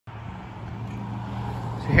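A car engine idling steadily: a low, even hum that grows slightly louder. A man's voice starts right at the end.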